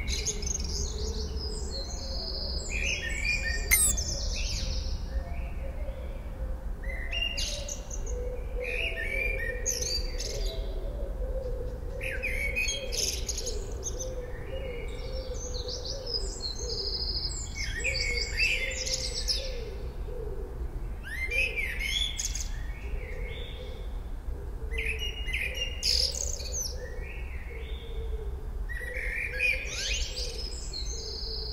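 Small birds chirping and singing in short repeated phrases every second or two, over a low steady hum.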